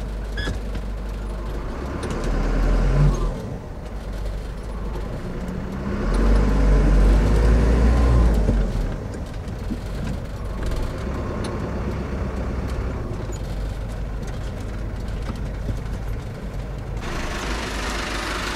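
Bus engine and road rumble heard from inside the cab while the bus rolls slowly, the engine pulling harder twice, about two seconds in and again from about six to eight seconds. A louder hiss comes in near the end as the bus draws up and stops.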